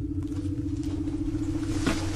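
Steady, low starship-interior hum: a pulsing mid tone over a low rumble, the Enterprise's background engine drone. There is a faint brief rustle near the end.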